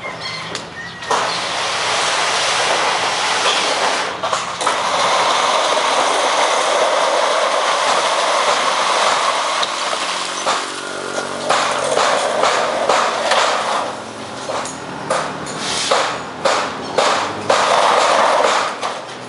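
Corrugated metal roofing sheets sliding down a slanted run of other sheets, a long, steady scraping rush of metal on metal. In the last few seconds it gives way to a series of clatters and knocks as the sheets are caught and set down.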